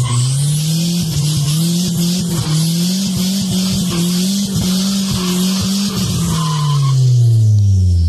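Nissan Hardbody pickup sliding, heard from inside the cab: the engine is held at high revs with small dips while the tires squeal, and the revs fall away about seven seconds in.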